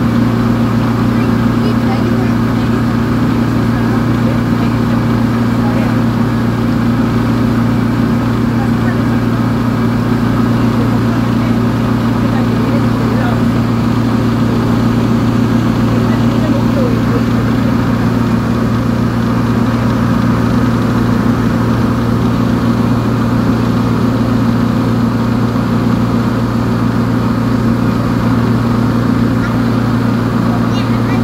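A boat's engine running steadily under way, a constant low drone, with the wake's water rushing behind the stern.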